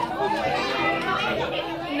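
Background chatter of several people talking at once in a room, with no single voice standing out.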